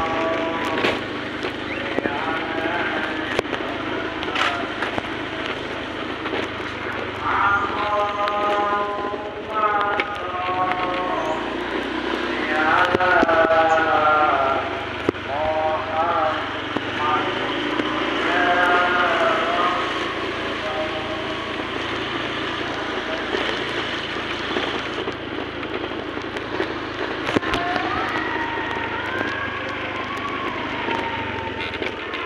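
Motorcycle ride with the engine running steadily under constant road and wind noise. A person's voice comes and goes over it several times.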